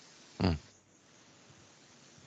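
A single short, nasal 'mm' from a person's voice about half a second in, a murmured acknowledgment. Faint room tone fills the rest.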